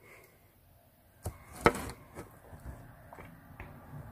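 A few sharp knocks and taps over quiet room tone, the loudest about one and a half seconds in, with softer ones after.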